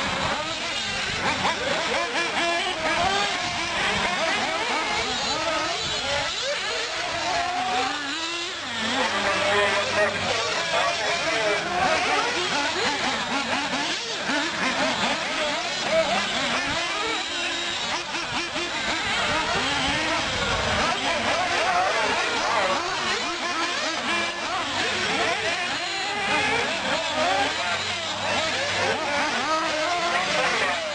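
Several radio-controlled racing buggies' small engines running hard around the track together, their overlapping high-pitched whines rising and falling constantly as they accelerate and back off through the corners.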